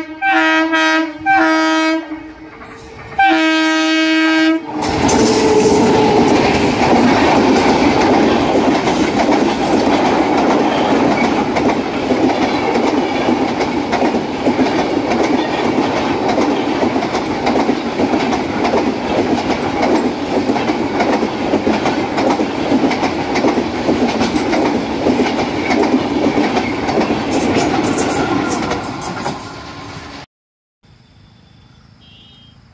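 Passenger train locomotive sounding its horn in several short blasts over the first four seconds. Then the train passes close by with a steady loud run of wheel noise and rapid clickety-clack over the rail joints, fading just before the end.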